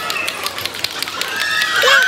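High-pitched whooping and shouting voices, with quick sharp slaps of hands high-fiving.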